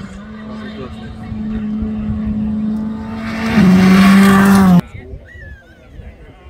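Rally car's engine running hard on a gravel stage, growing louder as it comes closer; its note drops in pitch and is loudest for about a second past the middle, then cuts off suddenly.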